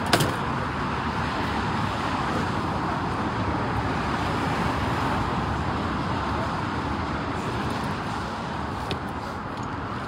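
Steady rushing background noise, like distant road traffic, swelling a little around the middle and easing off near the end, with a single click at the very start.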